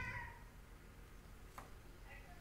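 A faint high-pitched animal call trailing off at the very start, then quiet room tone with one faint click about one and a half seconds in.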